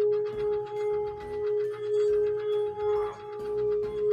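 Handheld metal singing bowl being rubbed around its rim with a wooden mallet, singing one steady tone with higher overtones that swells and ebbs about once a second, with light ticking of the mallet against the rim.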